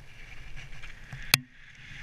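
Downhill mountain bike rattling over a dirt trail, heard from a helmet camera, with one sharp clack of the bike a little over a second in, after which the noise briefly drops before picking up again.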